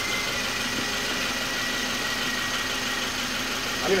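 Mazda engine idling steadily, a constant low hum, while its fuel injectors fire.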